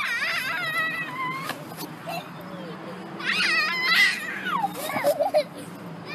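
A toddler's high-pitched, wavering vocal sounds, not words. There are two spells of about a second each, one at the start and one in the middle, and a shorter one near the end.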